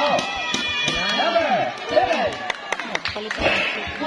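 Crowd of basketball spectators shouting and chattering, many voices overlapping, with several sharp knocks in the second half.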